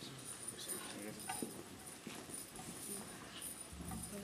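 Faint, scattered clicks and light rattling from small objects being handled, with no speech.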